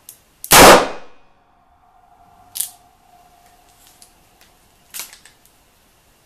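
A Ruger LCR .38 Special snub-nose revolver fires a single shot about half a second in, very loud with a short fading tail. A steady ringing tone lingers for about four seconds after it, with two much lighter clicks, one in the middle and one near the end.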